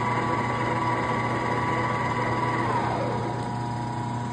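Bulgarian engine lathe running with a steady gear whine, then the spindle winds down about three seconds in, the whine falling in pitch as the chuck coasts to a stop.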